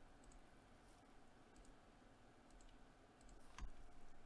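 Near silence with a few faint clicks, and one sharper click about three and a half seconds in.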